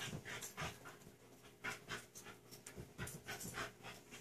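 A dog panting faintly, quick breaths at about three or four a second.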